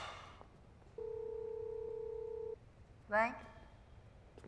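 A single steady electronic beep about a second and a half long, like a telephone tone. Near the end comes a short, loud, rising vocal sound, and there is a brief voice-like burst at the very start.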